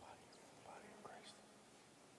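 Near silence: room tone, with a few faint, brief sounds close to the microphone in the first second and a half.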